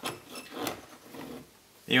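Faint rustling and handling noise that fades to near silence.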